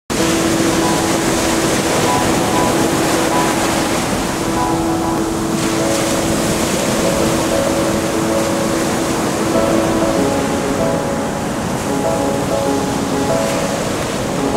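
Ocean surf washing onto a sandy beach, a steady rushing noise, mixed with background music of slow held notes.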